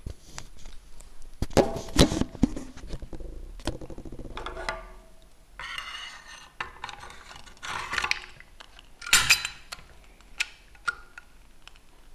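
Metal clinks and scrapes as a lit methylated-spirit burner tray is slid in under the boiler of a model steam traction engine, in a series of separate clatters, loudest about two seconds in and again about nine seconds in.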